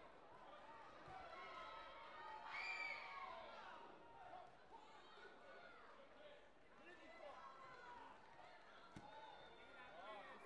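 Faint voices of spectators and coaches carrying through a large sports hall, with one louder call about two and a half seconds in. A single sharp knock comes near the end.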